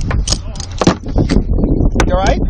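Wind rumbling on the cockpit camera's microphone, with several sharp knocks and clicks as a crewman's hands work at the pilot's harness and cockpit. Muffled voices are also heard.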